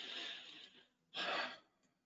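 A man breathing audibly into a close microphone: two breaths, a longer one at the start and a shorter one about a second later.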